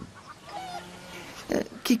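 A short, faint call from farmyard fowl over quiet outdoor ambience, with a voice starting at the very end.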